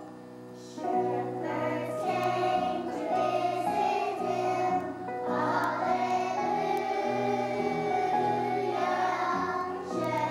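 Group of children singing a Christmas song together, picking up again about a second in after a short break between phrases.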